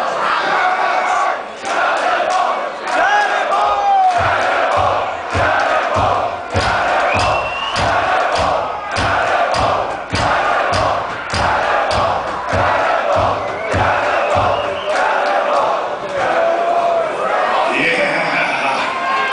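Concert crowd cheering and shouting between songs, with a regular beat of claps or stamps about twice a second through the middle.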